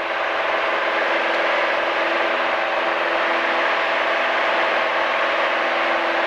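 Single-engine light aircraft's engine and propeller droning steadily, heard inside the cockpit in flight, with several steady tones in the drone.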